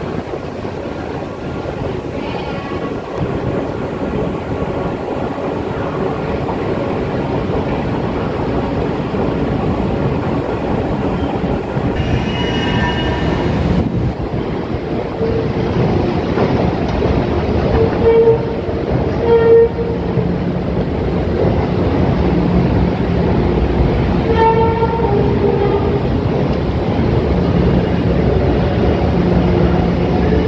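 Metro train noise in an underground station: a steady rumble that grows slowly louder, with brief pitched whines coming and going several times.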